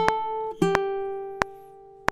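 Baritone ukulele played in waltz time: a chord is struck at the start and another just over half a second in, each left ringing and fading away. A sharp click keeps a steady beat about every two-thirds of a second.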